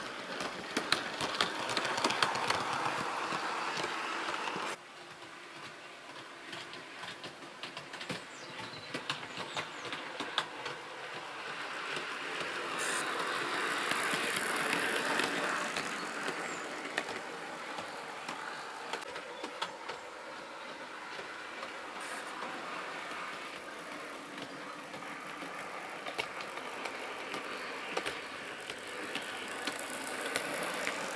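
EFE Rail Class 143 Pacer model train running on the layout track, its motor whirring and its wheels clicking over the rail joints. The sound grows louder as the model passes close by and drops suddenly about five seconds in.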